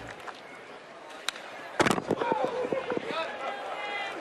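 Ballpark crowd murmur, then one sharp crack of a baseball at home plate about two seconds in, followed by a few smaller claps and crowd voices.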